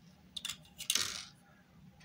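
Plastic spoons clicking and clattering against a thin plastic cup as they are set down in it: a couple of light clicks about half a second in, then a louder short rattle about a second in.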